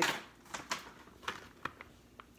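Scattered light clicks and rustles of a snack box of Parmesan crisps and its packaging being handled, about half a dozen small ticks over two seconds.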